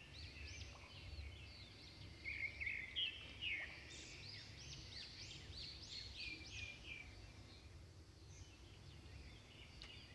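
Faint bird chirping: a run of short chirps that rise and fall in pitch, thickest between about two and seven seconds in, over a low background rumble.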